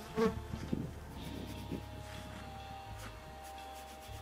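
Small flies buzzing, a thin hum that wavers and shifts in pitch as they move about.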